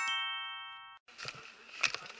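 A bright electronic chime sound effect ringing out and fading, its higher tones dying away first, gone about a second in. Faint outdoor rustling and small clicks follow.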